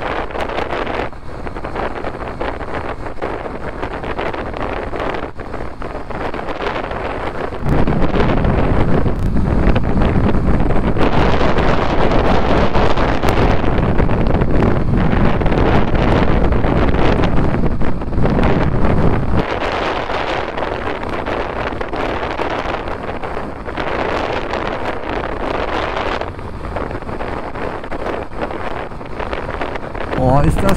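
Wind buffeting a cheap lavalier microphone on a Honda CB125R motorcycle at road speed, a dense rushing noise. About eight seconds in it turns much louder and deeper for about twelve seconds, then eases back.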